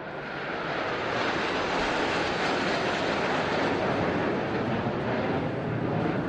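Jet noise from a low formation flyover by the Blue Angels and Thunderbirds military jet teams: a steady rushing sound that grows louder over about the first second and then holds, with a faint falling tone near the start.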